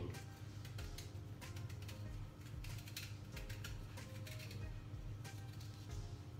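Small knife paring the skin off a hard quince quarter: a run of light, irregular clicks and scrapes. Quiet background music runs underneath.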